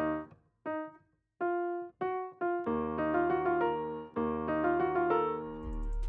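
Software piano playing a dark minor melody: a few short separate notes, then from about three seconds in, held chords with melody notes moving over them.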